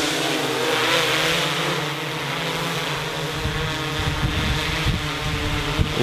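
DJI Inspire 2 quadcopter drone, its four rotors giving a steady multi-toned hum as it hovers and descends low to land. Low rumbling gusts of wind or rotor downwash hit the microphone in the second half.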